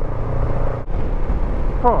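Honda NX500 motorcycle at road speed: steady wind rush over the microphone with the 471 cc parallel-twin engine's low drone underneath. A brief drop in the sound comes about a second in.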